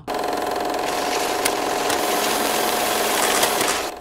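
Intro sound effect of an old film projector running: a steady mechanical whir and rattle that starts suddenly and cuts off suddenly.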